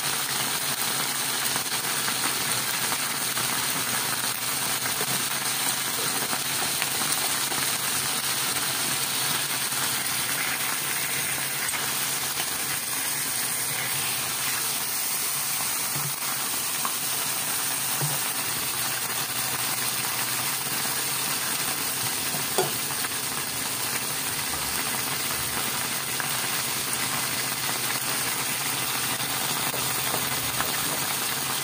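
Stuffed squid sizzling in oil in a nonstick frying pan, a steady hiss throughout. One sharp click about three-quarters of the way through.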